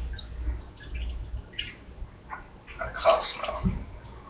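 A person sipping a cosmopolitan from a martini glass: a few small wet sips and clicks, then a louder breathy sound about three seconds in.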